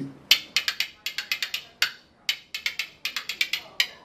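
A pair of spoons played as a percussion instrument, held between the fingers and rattled against the leg and hand: quick clusters of sharp metallic clicks with short gaps between them, in a rhythmic pattern.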